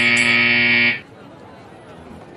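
A scoreboard buzzer sounds one loud, steady blast that cuts off about a second in, over a background of voices.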